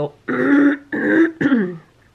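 A woman clearing her throat, three short bursts in quick succession, the last one falling in pitch.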